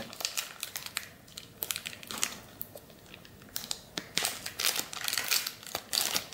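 Trading-card pack wrapper crinkling as fingers work its sealed flap open without tearing it, in scattered small crackles that grow busier over the last two seconds.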